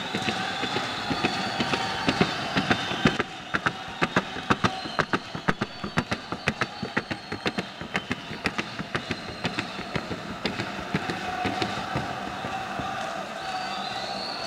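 Hoofbeats of a Colombian trote y galope horse trotting on the show ring's wooden board: a fast, even run of sharp knocks, about four a second, that starts a few seconds in and stops a few seconds before the end, over a steady arena hubbub.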